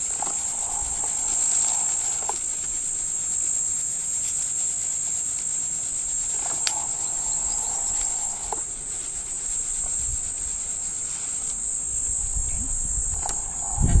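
Steady, high-pitched drone of insects, with a few soft clicks.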